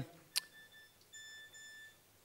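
A single short click about a third of a second in, then a faint, steady high-pitched tone with overtones lasting most of a second.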